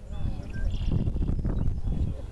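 Wind buffeting the microphone in a low rumble, with quiet voices and a few short, high whistled tones in the first second.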